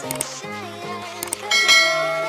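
Intro music with a subscribe-button sound effect: short clicks, then a bright bell chime about one and a half seconds in that rings on and is the loudest sound.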